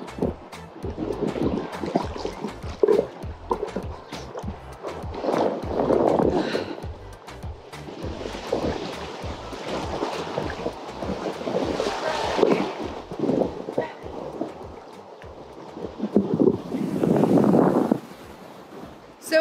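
Ocean surf and churning water close around a phone held at the water's surface. Wind buffets the microphone, and the water noise swells in several louder surges as waves roll through.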